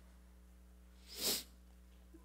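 One short, sharp breath sound from a man close to the microphone, a little over a second in.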